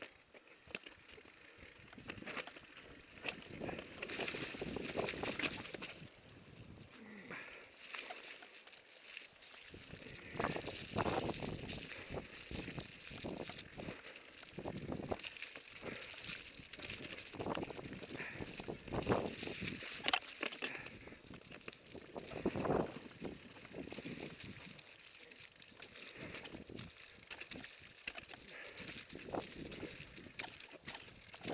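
Footsteps and rustling through grass as someone walks along a rough path, coming in uneven strokes.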